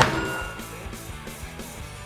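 A single gunshot right at the start, loud and sharp, with a short ringing tail that dies away within about half a second. Guitar-based rock music plays steadily underneath.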